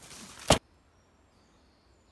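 Brief rustle of leaves and branches against the camera, ending in a single sharp click about half a second in; after that, near silence with a few faint, thin high-pitched tones.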